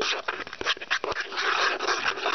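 A knife stirring and mashing a wet mush of cupcake and milk in a plastic bowl, with quick, irregular squelching and scraping strokes.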